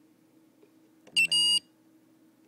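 Scantronic Mosaic alarm keypad's sounder beeping once about a second in as the Enter key is pressed, a short pip running straight into a slightly longer high-pitched beep.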